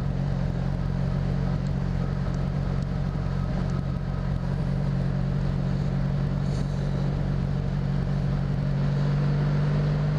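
The V4 engine of a 1983 Honda V65 Magna cruiser runs steadily at highway cruising speed, a smooth even drone that grows slightly louder near the end.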